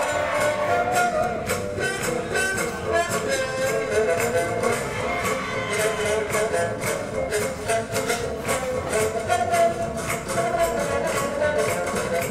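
Swing jazz music playing for Lindy Hop dancing, with a steady beat and melody lines.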